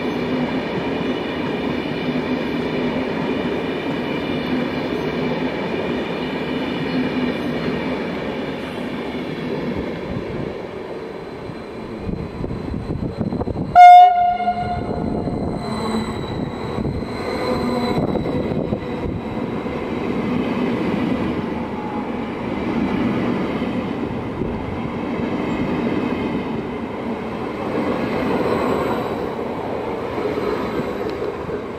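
Westbahn Stadler KISS double-deck electric train gives one short, very loud blast on its Makrofon horn about halfway through. Around it runs the steady electric whine and rolling noise of the train moving along the platform.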